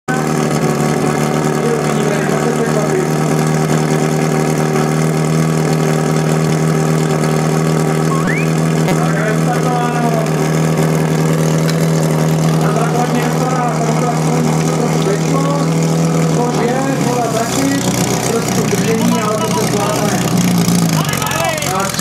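Portable fire pump engine running at high, steady revs, its note dropping to a lower pitch about 17 seconds in, then dipping and climbing again near the end. Spectators shout over it from about halfway through.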